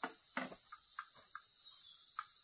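Steady high-pitched chorus of insects, with a few short, irregular footstep knocks, the strongest in the first half second, as someone steps off a wooden plank ramp onto dirt.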